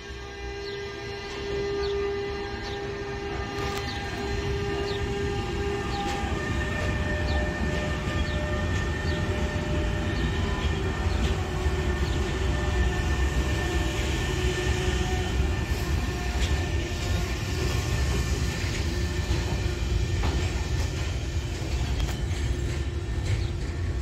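DB electric locomotive hauling a freight train past: a deep rail rumble that builds over the first few seconds and then holds steady as the covered freight wagons roll by. Several steady tones sound over the rumble in the first six seconds, and a fainter high one sounds later.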